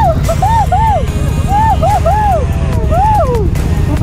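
Motorcycle engines idling with a steady low rumble, while a high-pitched voice calls out in a string of short rising-and-falling notes.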